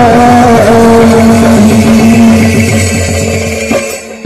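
Live devotional kirtan music: a long held melodic note that bends and then holds steady, with fast drum strokes underneath. It drops away just before the end.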